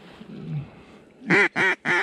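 Duck call blown in a quick series of three loud, short quacks about 0.3 s apart, starting just past a second in, working ducks that are coming in to the decoys.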